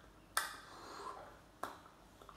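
Two sharp smacks of hands striking together while signing, about a second and a quarter apart.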